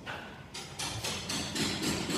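Workshop background noise with a few faint knocks.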